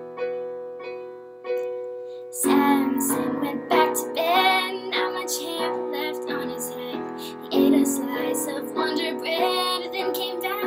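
Piano played in slow, ringing chords about once a second. From about two and a half seconds in, a woman's voice sings a ballad melody over the piano accompaniment.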